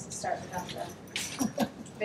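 Quiet, indistinct voices murmuring in a meeting room, too low to make out words.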